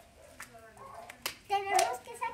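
Homemade glue-and-detergent slime being stretched and squeezed by hand, giving a few sharp wet clicks and pops. A child's voice breaks in near the end, louder than the slime.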